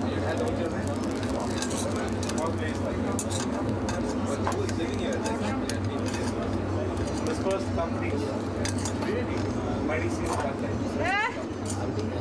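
A metal fork clinking and scraping against a small black iron kadai as a thin pancake is loosened from the pan, in repeated small clicks. Under it runs a steady low hum and a murmur of voices.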